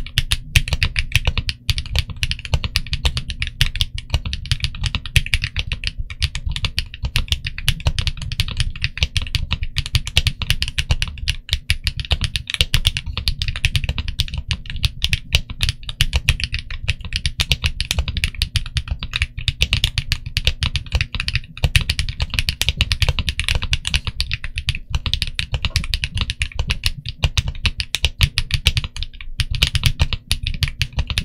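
Continuous fast typing on a TG67 V3 mechanical keyboard with Kinetic Labs Latte linear switches (HMX, 63.5 g) under 1.5 mm dye-sub PBT keycaps, dense key strikes and bottom-outs close to the microphone.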